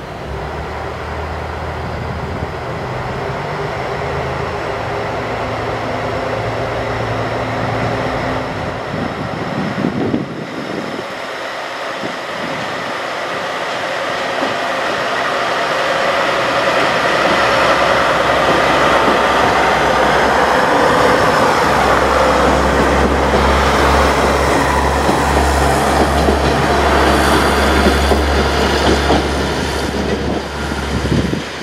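Diesel railcars idling with a steady low engine hum at the platform. After a break about ten seconds in, a JR Kyushu KiHa 47 diesel railcar set's engines build up from about sixteen seconds to a strong rumble as the train pulls away under power, with wheel and rail noise.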